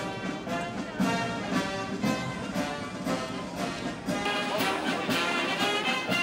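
Military brass band playing, with trombones leading and a steady beat.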